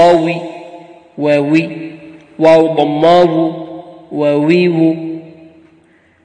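A man's voice chanting the Arabic letter waw with its short vowels (wa, wi, wu) in Qur'anic recitation style. There are four drawn-out, held syllables, each trailing off slowly.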